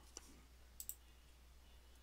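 Near silence with a steady low hum and a few faint clicks in the first second from working a computer's keyboard and mouse.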